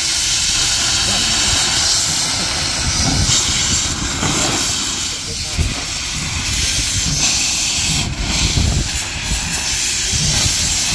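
Small saddle-tank steam locomotive venting steam from its open cylinder drain cocks: a loud, continuous hiss.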